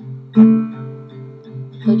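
Acoustic guitar accompaniment between sung lines: a chord struck about half a second in rings on, followed by lighter notes. A woman's singing voice comes in right at the end.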